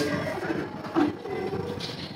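A two-burner LPG gas stove's control knob being turned to light a burner, with a short sharp click near the end.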